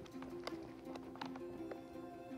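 Soft background music with sustained notes, and a few faint, irregular clicks as the snaps of a car seat's fabric headrest pad are pressed shut.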